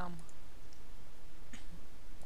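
A single faint computer mouse click about three-quarters of the way through, over low background noise.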